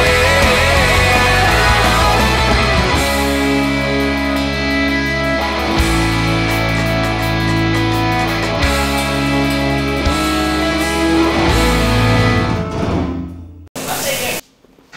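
Loud rock music with distorted electric guitar, bass and drums: a sung line in the first second or so, then heavy sustained guitar chords changing every second or two. The music fades out near the end and gives way to a short burst of static hiss.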